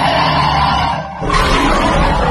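Intro sound effect: a loud, noisy rushing whoosh that dips briefly about a second in, then surges again.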